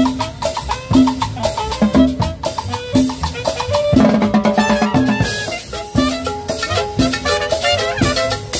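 A live band playing upbeat Latin dance music, with a drum kit keeping a steady beat under quick melodic notes.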